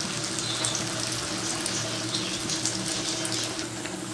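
Batter- and noodle-coated potato triangles deep-frying in a pan of hot oil: a steady sizzle with fine crackles. The pieces are turning golden brown, close to done.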